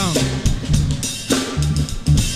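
A funk groove played on drum kit and bass guitar: kick and snare hits over repeating low bass notes.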